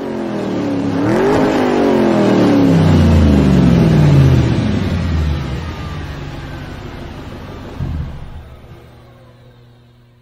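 A car engine revs up briefly, then its pitch falls steadily as it swells to its loudest and fades away over several seconds, like a car speeding past. A short thump sounds about eight seconds in.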